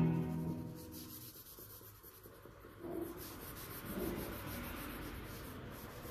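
Background music fading out, then charcoal scratching and rubbing on drawing paper from about three seconds in.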